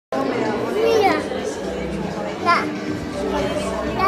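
A toddler's voice with a few high, gliding calls about one second and two and a half seconds in, over steady background chatter.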